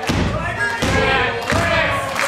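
Three heavy thuds on a wrestling ring, about 0.7 s apart, as blows come down on a downed wrestler, with the crowd shouting over them.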